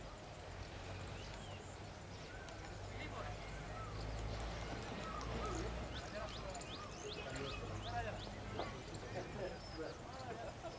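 Distant voices of players calling across an open cricket field, over a steady low rumble of outdoor ambience and wind. A run of short high chirps comes in around the middle.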